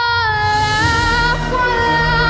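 A teenage girl's solo voice holding a long high note with vibrato, stepping down to a lower note just after the start as a symphony orchestra comes in underneath with strings and bass.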